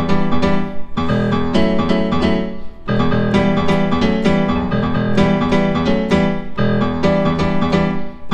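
Korg M1 piano patch, reproduced by an M1 expansion pack, played as repeated keyboard chords with brief breaks between phrases.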